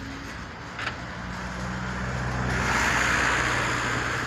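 A car driving close past: a steady engine hum from about a second in, with tyre noise that swells from about halfway through and then fades.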